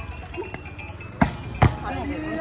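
A volleyball struck twice by hand: two sharp slaps less than half a second apart, with voices in the background.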